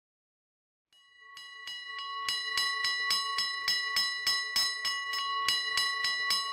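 Alarm bell ringing rapidly, about four strikes a second, each strike ringing on into the next; it fades in about a second in and grows louder. It stands for an old fire-house alarm bell.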